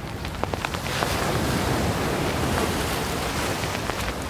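A steady rushing noise with scattered crackles and pops, starting abruptly out of silence as the opening texture of an instrumental post-rock track.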